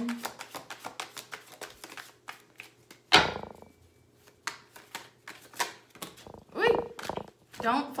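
A deck of tarot cards being shuffled by hand: a quick run of crisp card clicks, then a single loud slap of cards about three seconds in, followed by a few scattered clicks.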